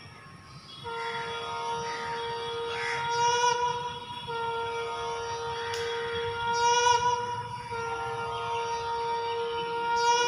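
Dance music: a wind instrument holds one long, steady reedy note, broken briefly twice and swelling in loudness three times.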